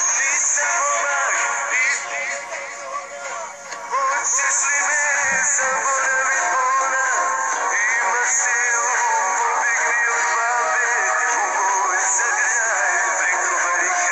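A song: a male voice singing with wavering vibrato over backing music, briefly quieter about two to four seconds in.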